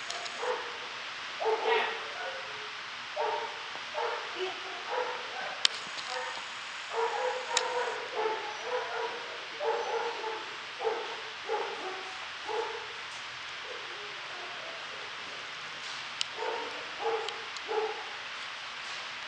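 A dog yipping: short, high barks over and over, with a pause of a few seconds before a last run of yips near the end.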